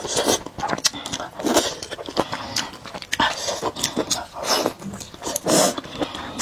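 Close-miked wet chewing and slurping of thick noodles in sauce, irregular mouth sounds coming every half second or so.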